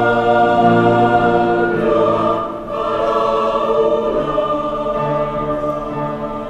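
Mixed choir singing long held chords, with a short break about two and a half seconds in before a new chord begins.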